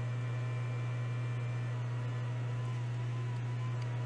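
Steady low electrical hum with a soft hiss over it: the running noise of micro-soldering bench equipment.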